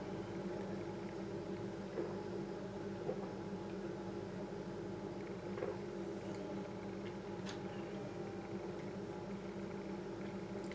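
Steady low hum of room tone with a few faint, soft clicks scattered through it.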